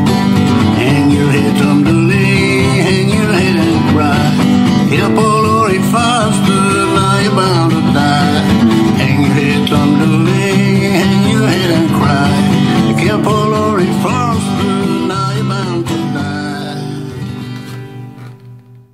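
Instrumental outro of a country-folk song played on acoustic guitar, with a melody line over steady chords; it fades out over the last few seconds.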